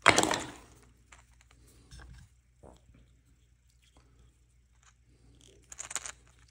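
One sharp knock at the start, then faint, scattered clicks and taps of small parts being handled on a workbench: a mini spring clamp and a screw being picked up and fitted together.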